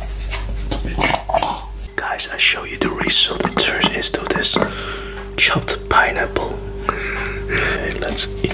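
Close-up whispering and wet mouth sounds, mixed with clicks and taps from a clear plastic food-chopper container of frozen pineapple being handled and its lid taken off.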